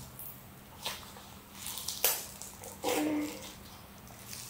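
Slime being squeezed and stretched by hand, giving a few short, faint squelches and pops.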